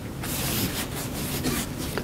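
A soft rustling, rubbing noise that starts a moment in and runs on steadily.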